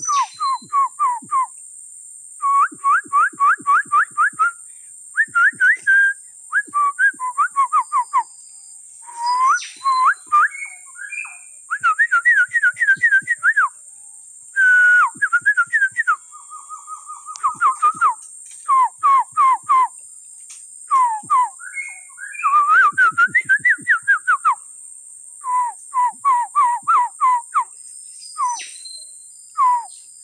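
Loud bird calls: quick runs of short, sharp whistled notes, repeated over and over with brief gaps between them, over a steady high-pitched hiss.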